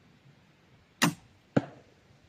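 Large crossbow firing a 20-inch bolt: a sharp crack of the shot about a second in, then a second, slightly louder knock about half a second later, by its timing the bolt striking the target 33 m downrange.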